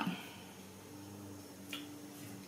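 Quiet room with a faint steady hum and one short click near the end, from hands working a rubber brayer and a paper cut-out on a craft mat.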